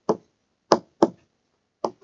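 Stylus tapping on a tablet screen while handwriting: four short, sharp taps at uneven intervals.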